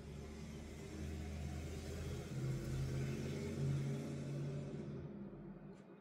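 A car engine sound running steadily: a low rumble that swells slightly in the middle and cuts off just before speech resumes.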